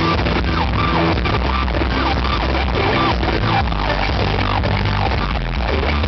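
Live rock band with an electric guitar solo on top, its notes sliding up and down in pitch over a steady bass and drums. It is a harsh, overloaded recording made from the audience.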